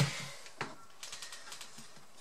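A few faint clicks and taps of laptop plastic parts being handled, with one sharper click about half a second in.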